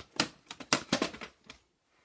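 Plastic VHS clamshell cases clacking and rattling as they are handled, a quick run of clicks that stops about one and a half seconds in.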